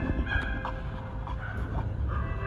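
Chimpanzees giving short, high-pitched calls one after another.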